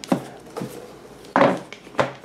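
A few knocks and scrapes as a small metal lock box is lifted out of a cardboard shipping box and set down on a glass tabletop. The loudest knock is about one and a half seconds in.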